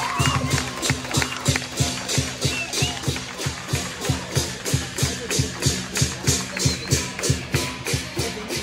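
Lion dance percussion: a big Chinese drum beaten in a steady, driving rhythm with cymbal crashes on the beats, about two to three beats a second, accompanying a lion dance on poles.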